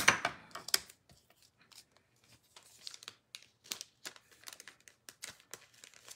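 Paper and cardstock being handled on a craft mat: light rustling and crinkling with many small taps, loudest just at the start.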